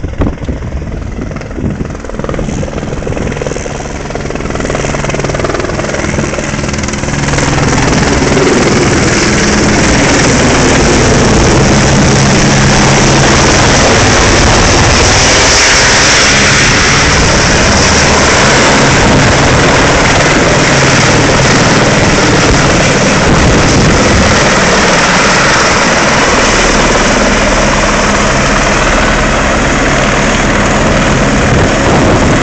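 Helicopter rotor and turbine engine, growing louder over the first several seconds as it approaches, then loud and steady as it flies low and close overhead and hovers near the ground.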